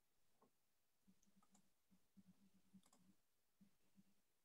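Near silence: faint room tone with a few very faint clicks.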